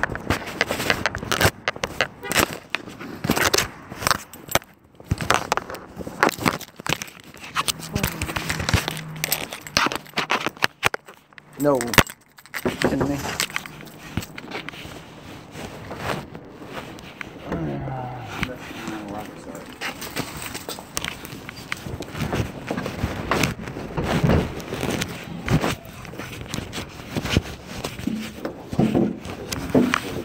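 Crackling, scraping handling noise from a concealed recorder's microphone rubbing against clothing, with muffled voices now and then.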